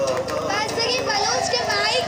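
A woman speaking into a microphone, her voice carried through a public-address system.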